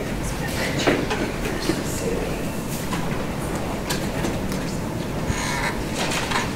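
Steady rumbling room noise on a poor-quality recording, with soft rustles and clicks of paper being handled and a sheet turned over on a table.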